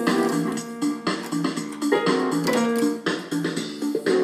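Portable electronic keyboard pawed by dogs: clusters of notes struck at uneven moments, several ringing together without any tune.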